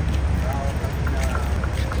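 Steady low outdoor rumble, with a faint voice heard briefly from about half a second in.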